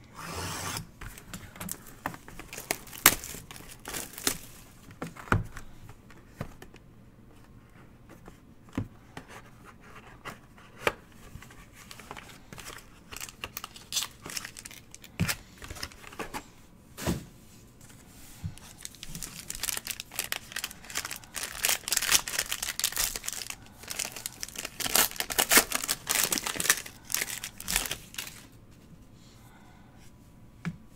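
Hands handling a trading-card box and cards, with scattered taps and clicks, then a card pack wrapper being torn open and crinkled for several seconds in the last third.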